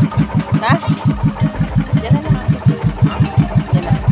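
Boat engine of a large motorized bangka running at a steady low speed, a regular chugging of about six or seven beats a second.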